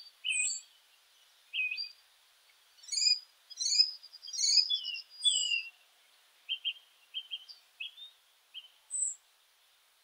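Birds singing: short high chirps and whistled notes, some sliding downward, with gaps between. The song is busiest in the middle, and only a few brief chirps come near the end.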